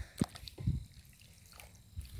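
Walnut-husk dye dripping from wool trousers as they are lifted out of the dye pot on a stick: one sharp drip near the start and a softer one a moment later.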